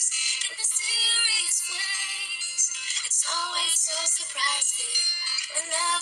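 A woman singing a slow love ballad over backing music, in sustained sung lines.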